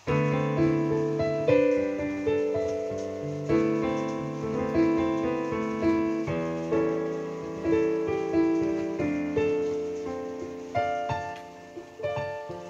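Solo piano playing a slow ballad introduction, with chords struck about once a second and left to ring and fade. The playing begins abruptly.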